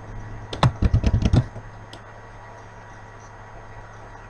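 A quick run of computer keyboard keystrokes, about ten clicks within a second near the start, over a steady low hum.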